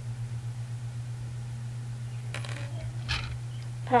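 A small bent-metal hitch pin being pulled and handled, with a plastic toy trailer unhitched from a Lego car: a few faint clicks and a light metallic clink about two and a half and three seconds in, over a steady low hum.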